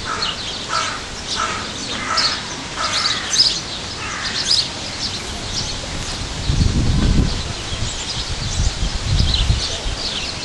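Zoo aviary birds calling: a string of repeated calls, about two a second, in the first four seconds, over high chirping that runs throughout. A low rumble comes twice in the second half.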